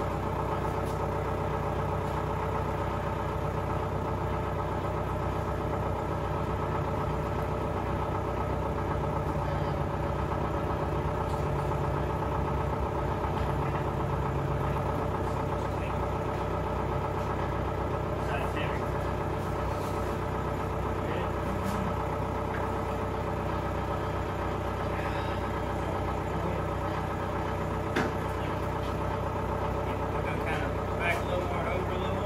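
An engine idling steadily, a constant even drone with no revving, with faint voices and the odd clank of work in the background.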